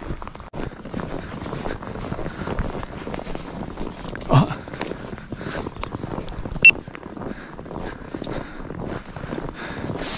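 Footsteps and rustling through dry vegetation, a steady scuffing noise. A brief voice sound comes about four seconds in, and a single sharp click a little before seven seconds.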